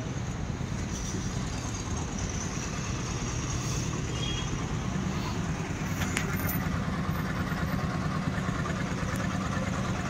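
A motor vehicle's engine running steadily at low speed, a low rumble with road and traffic noise around it.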